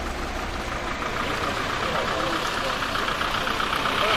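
Vehicle engines idling and traffic moving on a wet road, with indistinct voices of people around; it grows a little louder towards the end.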